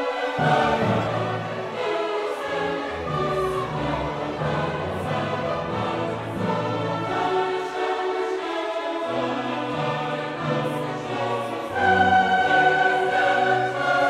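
Orchestral classical music playing, with sustained melodic lines, growing louder on a long held note near the end.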